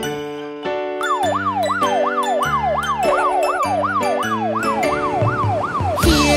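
A fire truck's siren sound effect, a fast rising-and-falling wail about twice a second, starting about a second in, over cheerful children's background music.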